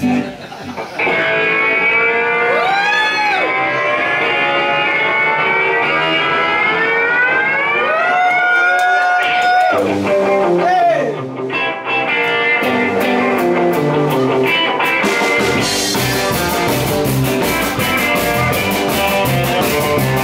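Electric guitar intro of a rock song: sustained notes sliding slowly up and down in pitch, arching up and back, with a long held high note midway, played to mimic a motorcycle revving up. About fifteen seconds in, the drums and the rest of the band come in with a steady rock beat.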